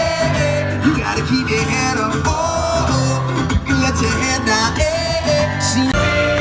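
Live amplified concert music from an outdoor stage, heard from within the audience: a singer holding long, wavering notes over a full band accompaniment, steady and loud.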